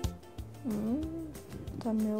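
A woman's drawn-out hum, one pitched 'hmm' that dips, rises and falls again over most of a second, followed by a short spoken word.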